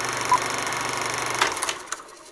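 Old film projector sound effect with a film countdown leader: the projector runs steadily, with one short countdown beep about a third of a second in, and stops with a few crackles about one and a half seconds in.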